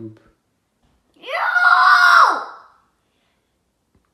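A young child's single high wailing whine, about a second and a half long, held at one pitch and dropping away at the end: she is upset at the brown smear on her hand.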